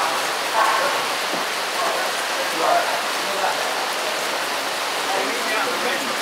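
Heavy rain falling steadily, an even hiss, with faint snatches of voices in the background.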